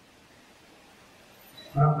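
A pause in a man's speech into a microphone: faint steady room hiss, then his voice resumes near the end.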